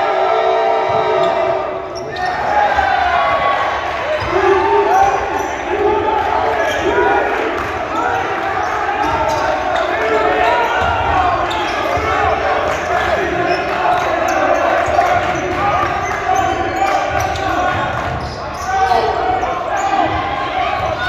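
Basketball game sounds in a reverberant gym: many voices of players and spectators calling out and talking over one another, with a basketball bouncing on the hardwood floor.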